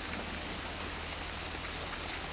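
Footfalls of many runners on an asphalt road, merging into a steady pattering hiss with a few faint, distinct shoe slaps.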